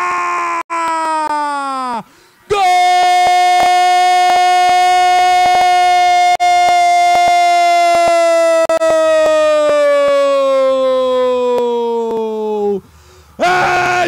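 A sports commentator's goal cry: a shout that drops in pitch, then one long held call of about ten seconds whose pitch sinks slowly before it breaks off near the end.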